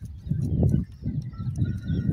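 Low, uneven rumble of wind on the microphone, with a few faint, thin peeps from francolin chicks in the second half.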